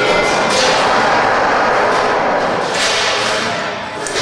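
Experimental electroacoustic noise music: a loud, dense wash of noise cuts in abruptly and holds, with faint pitched tones buried inside it, swelling once more near the end before easing slightly.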